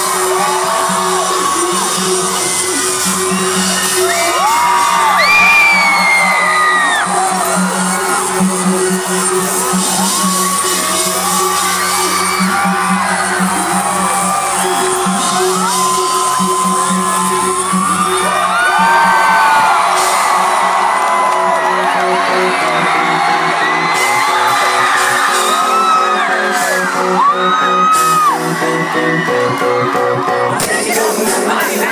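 Live band music heard from inside a concert crowd: a steady low synth note holds under the band while fans scream and whoop throughout, many short high shrieks rising and falling over the music. The low note drops away about two-thirds of the way through.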